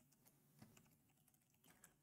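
Very faint computer keyboard typing: a few scattered key clicks over near silence.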